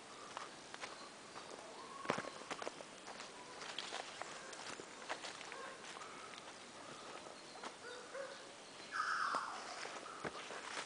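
Footsteps of a person walking through forest, with scattered clicks and snaps underfoot and a sharp crack about two seconds in. Near the end there is a brief, louder falling sound.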